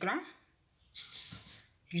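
Granulated sugar poured from a cup into an empty plastic blender jar: a short, grainy pour lasting about half a second, starting about a second in.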